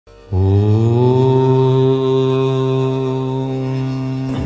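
A man's voice chanting one long held syllable, a mantra-like drone. It starts about a third of a second in, rises a little in pitch, then holds a single steady note.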